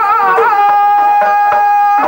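Dhadi folk music: sarangi with dhadd hand drums struck in quick, steady strokes, about four a second. A long note is held level from about half a second in.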